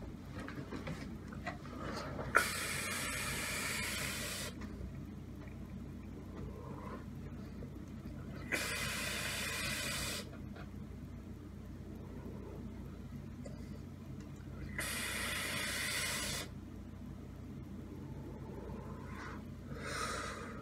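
Vaping on a Wotofo Lush rebuildable dripping atomizer with dual Clapton coils fired at 90 watts and the airflow wide open: three hissing puffs of about two seconds each, the first opening with a sharp click.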